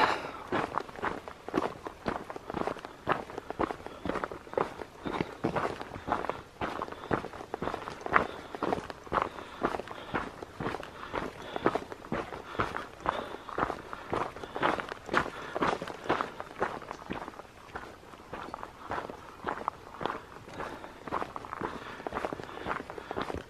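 A hiker's footsteps crunching on a stony, gravelly dirt trail at a steady walking pace, about two steps a second.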